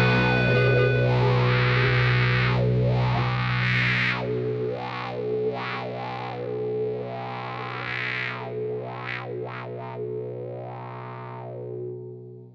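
Two layered tracks of fuzz-distorted electric guitar (ESP LTD EC-1000 through a Big Muff and Crybaby wah into a Yamaha THR10) letting a low chord ring while the wah sweeps up and down several times. The whole sound slowly fades as the last chord dies away.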